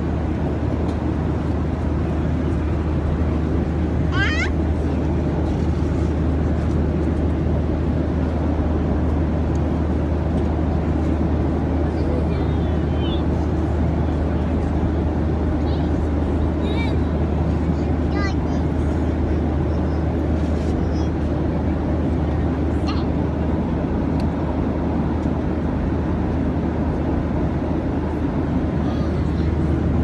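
Steady low drone of an airliner cabin: engine and air noise at an even level throughout. Over it, a toddler's short high-pitched squeals rise and fall several times.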